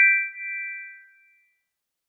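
A short bright chime sound effect for a logo reveal: three quick notes stepping upward, ringing together and fading out within about a second and a half.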